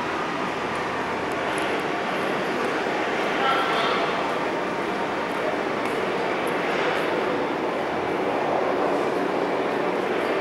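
Steady rushing outdoor background noise, with a faint whine that comes and goes about three to four seconds in.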